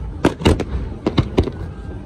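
Aerial fireworks bursting: a quick run of about six sharp bangs, two of them almost together, over a steady low rumble.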